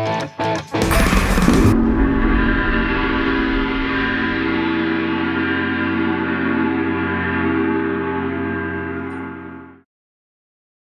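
A Paiste gong struck once with a soft mallet about a second in. It rings on for several seconds with many steady overtones, then dies away quickly just before the end.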